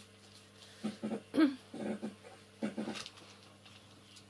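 A dog making short barks and whines in four brief bursts, the second loudest, over a steady low hum.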